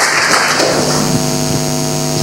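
Audience applause dying away in the first second, then a steady electrical mains hum of several pitches over the room's PA system.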